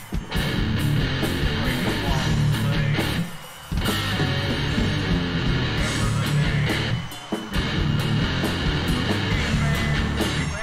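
Death metal song with distorted electric guitars and drums, in a recording the reviewer calls not that good. The band stops dead twice, for about half a second each time: about three seconds in and again about seven seconds in.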